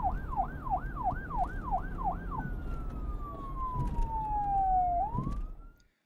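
Siren sounding in a fast yelp, quick rising-and-falling sweeps about three a second, then changing about halfway through to one long falling wail and a brief rise before it cuts off near the end, over a low rumble.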